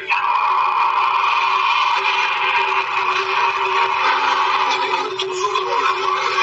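Motor vehicles driving fast on a dirt road, heard as a steady rushing drone of engine and road noise that eases off about five seconds in.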